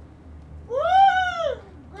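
A man's single drawn-out "woo!" whoop, a celebratory party yell, about a second long, its pitch rising and then falling.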